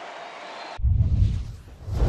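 Stadium crowd noise cuts off abruptly less than a second in, replaced by a loud, deep whoosh-and-boom transition sound effect that comes in two pulses.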